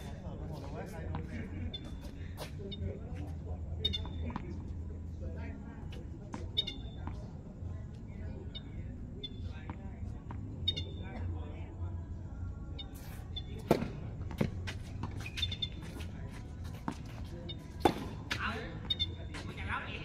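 Tennis balls struck by rackets during a doubles rally: a few sharp pops, the loudest about fourteen and eighteen seconds in, over voices and a steady low hum.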